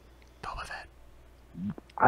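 Quiet speech: a single soft, breathy, almost whispered word, then a brief low voiced sound.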